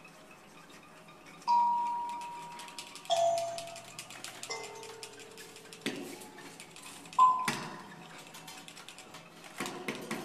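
Sparse, bell-like struck tones from small hand percussion, each ringing out and fading at a different pitch, four in all. Light metallic clicks and rattles fall between them.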